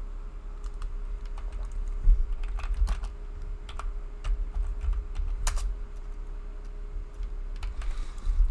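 Typing on a computer keyboard: scattered, irregular keystrokes, with a louder tap about two seconds in and another about five and a half seconds in.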